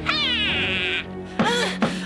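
A high, wavering screech that falls in pitch, then holds a quavering note before breaking off about a second in, over background music with low held notes.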